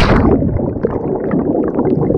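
Muffled rush and gurgle of churning water and bubbles, heard with the microphone underwater just after a cannonball jump into a lake. The hiss of the entry splash dies away in the first moment, leaving a dull low rumble.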